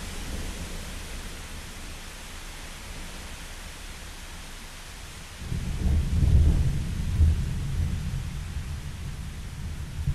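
Steady rain hiss with a deep roll of thunder that swells suddenly about five and a half seconds in, peaks, then slowly dies away.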